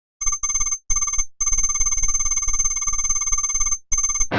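An electronic ringing tone, like a phone ringtone, in on-off bursts: two short rings, one long ring lasting about two and a half seconds, then a brief ring near the end.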